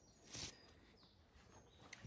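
Near silence outdoors, with faint bird chirps and one brief soft hiss of noise about half a second in.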